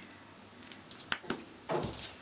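Two sharp clicks about a second in, then a softer knock near the end: hands handling plastic craft-paint bottles and a clear plastic palette tray on a tabletop.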